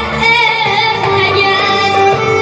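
A boy singing a song through a microphone, backed by a live band.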